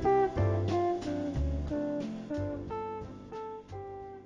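Slow jazz music: a run of single plucked guitar notes over a bass line, each note ringing out, the whole growing steadily quieter as the piece fades.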